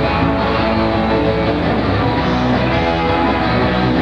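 Live rock band playing an instrumental stretch with electric guitar to the fore and no singing. The recording is dull and lacks treble.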